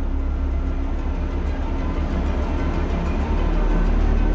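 Deep, steady low rumble from a demo video's soundtrack playing over a large hall's loudspeakers.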